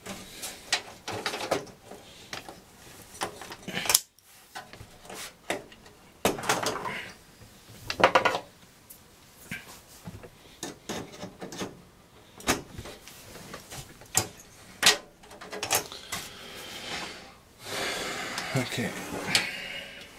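Hands and a pair of pliers working inside an open desktop PC case: irregular clicks, scrapes and knocks of metal and plastic parts, the loudest knock about eight seconds in.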